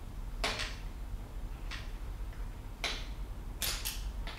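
A long 4 mm Allen key working the left-hand-threaded screw at the bottom of a suspension fork lower loose. The key gives short clicking scrapes in the screw head, about one a second, the last two close together.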